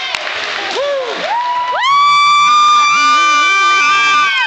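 Spectators cheering at a wrestling match. Partway through, a loud, high-pitched held scream rises over the crowd and lasts about three seconds.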